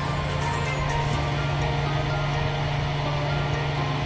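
Hair dryer running steadily on its low setting, a constant whirring hum from its motor and fan.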